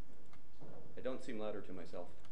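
A person speaking, with words the recogniser did not catch, starting just over half a second in, preceded by a few faint clicks.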